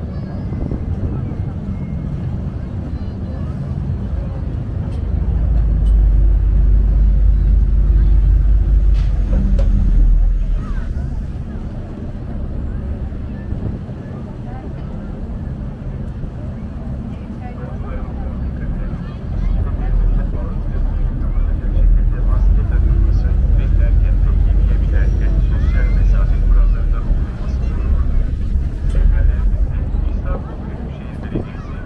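Passenger ferry's engines running with a low rumble that swells louder twice as the boat manoeuvres in to the pier, under the chatter of passengers' voices.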